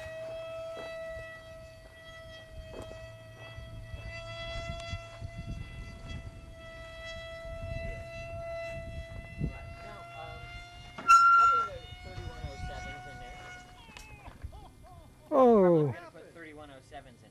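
A radio-control model airplane's motor and propeller whine steadily in flight, rising slightly in pitch, then cut off about fourteen seconds in. A short loud call comes about eleven seconds in, and near the end a loud cry from a person slides steeply down in pitch.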